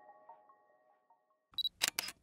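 A few soft, repeating music notes ring out and fade away. About one and a half seconds in comes a camera-shutter sound effect: a brief high beep followed by a few sharp clicks.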